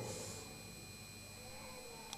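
Faint room tone in a pause between spoken words: a low steady hiss with thin, steady high-pitched electrical tones. The reverberation of the last word fades away at the start.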